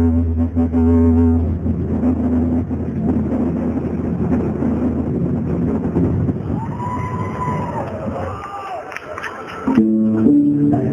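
Shadow-play soundtrack of music and sound effects: a held low drone that stops about a second and a half in, then a rumbling, noisy bed with a short gliding tone, fading out before music comes back in just before the end.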